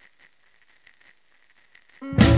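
Faint hiss with a thin, steady high tone and a few soft, irregular clicks, the low noise of the recording's lead-in.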